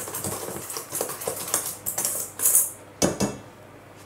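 Wire whisk stirring a dry flour mixture in an enamel bowl, the wires scraping and clinking against the bowl in quick irregular strokes. The whisking stops about three seconds in.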